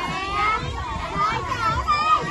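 A group of young children chattering and calling out over one another, many voices at once.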